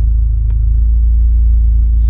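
Honda K24 2.4-litre inline-four idling, heard from inside the car's cabin. A single click comes about half a second in. About a second in, the engine note shifts and gets a little louder as the idle speed climbs in response to a raised idle target of 900 rpm, which it does not yet reach.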